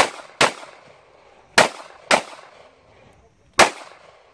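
Handgun fired five times outdoors, in two quick pairs about half a second apart and then a fifth shot near the end, each sharp report trailing off briefly.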